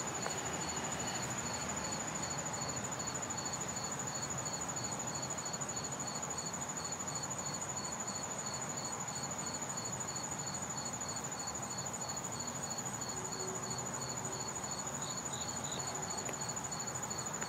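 Singing insects outdoors: one holds a steady high trill while another chirps in even pulses a few times a second beneath it.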